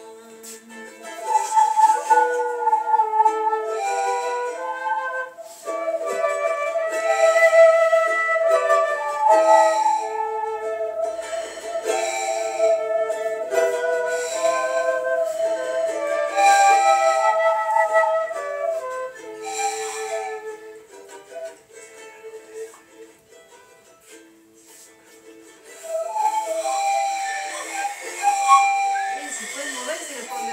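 Live folk music in vidala style: a violin playing a melody of held notes, with shaker-like percussion marking the beat. The music drops to a softer passage about two-thirds of the way through, then comes back up.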